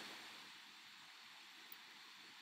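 Near silence: faint room tone and microphone hiss, with one tiny click near the end.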